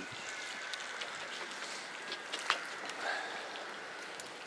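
Quiet, steady outdoor background hiss with a few faint clicks.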